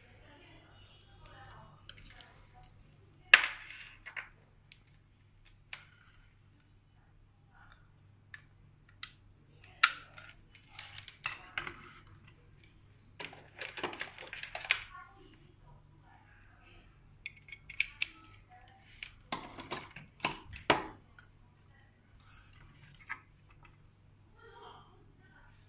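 Handling noise of a small plastic LED desk lamp and its USB cable: scattered sharp clicks and knocks with brief rustling as the cable is unwound and plugged into the plastic base, the loudest knock a few seconds in, over a faint steady low hum.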